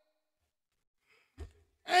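Near silence, then a short, soft low thump about a second and a half in. Right at the end a man's voice begins a drawn-out "and..." that falls in pitch.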